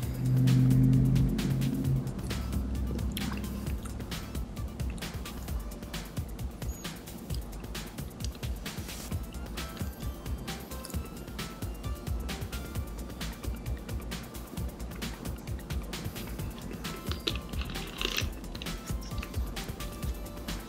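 A person sipping soda and swallowing, followed by many small mouth and lip clicks while tasting it, over quiet background music. A low steady note is loudest in the first two seconds.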